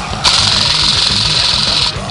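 Airsoft rifle firing one full-auto burst of about a second and a half, a rapid rattle of shots that starts and stops abruptly, over background rock music.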